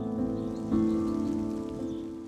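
Background music of sustained, held chords, moving to a new chord a little under a second in and then fading out.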